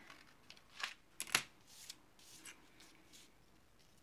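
Paper being handled and cut with scissors: rustling of a printed paper sheet with a few short, sharp snips, the loudest about a second and a half in.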